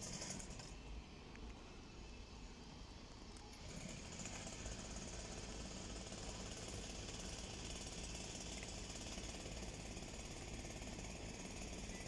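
Steady outdoor background noise, a low rumble under a hiss, getting louder about four seconds in.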